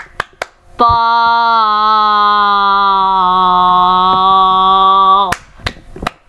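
A voice holding one long sung note for about four and a half seconds, stepping down slightly in pitch about a second in and then held steady. A few sharp clicks come just before and just after the note.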